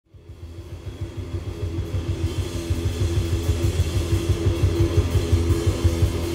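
Live rock band playing: a fast, even pulse of low notes, about six or seven a second, under a held tone, rising in loudness from silence over the first few seconds.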